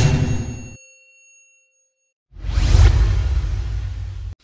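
Logo-intro sound effects: a loud hit with a bell-like ring that fades out over about a second and a half, then a second loud, rushing hit about two seconds later that runs on for nearly two seconds and stops sharply.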